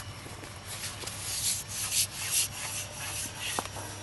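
Cloth rustling and rubbing: a rotor blade sliding out of its padded fabric bag, in a run of soft swishes, with a small click near the end.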